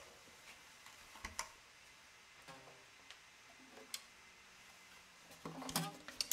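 Faint scattered knocks and clicks of handling: a wooden chair being moved and an octave mandolin being picked up, with a slightly louder rustle of movement near the end.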